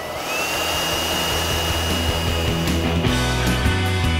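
Makita cordless blower, rigged with a paint tin at its nozzle to spray paint onto a wall, spinning up with a rising whine that levels off into a steady high whine for about three seconds, over background rock music.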